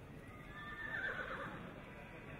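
A horse whinnying once, a pitched call about a second long that begins about half a second in.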